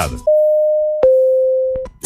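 Two-note electronic tone: a steady pure beep of just under a second, then, after a click, a slightly lower beep of about the same length.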